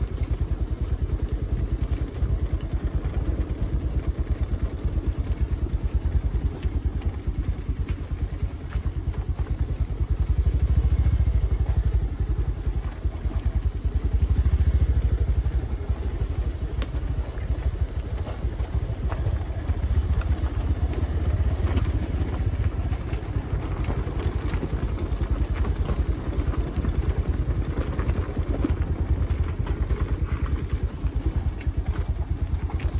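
Motorcycle engine running as it rides along a rough stony dirt track: a steady low rumble of rapid engine pulses that swells twice in the middle.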